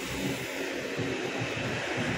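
Steady outdoor roadside noise: an even hiss with an uneven low rumble, as of traffic on a nearby road.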